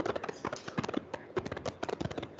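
Chalk drawing lines on a blackboard: a rapid, irregular run of sharp taps and scrapes.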